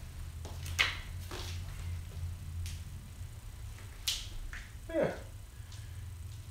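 A few short, sharp clicks and rustles of a small photograph being handled and passed from hand to hand, over a steady low hum. A brief falling vocal sound comes about five seconds in.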